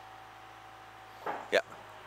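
Faint steady hiss of a small stream, then a short breath and a spoken "yeah" about a second and a half in.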